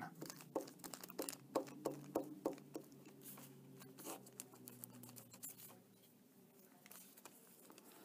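Glue stick rubbed in short strokes over a brown paper bag, the paper crinkling faintly under it. The strokes come thick for about the first three seconds, then thin out to a few faint scrapes.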